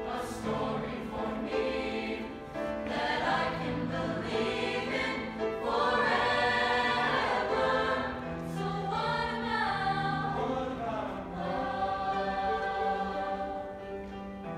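Mixed-voice show choir singing, swelling to its loudest from about six to eight seconds in, with steady low notes held underneath.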